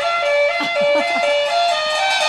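Saxophone playing a slow melody of held notes that step up and down.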